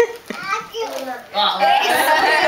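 Voices in a room: children chattering and adults talking. It goes quieter for about a second, then the voices pick up again.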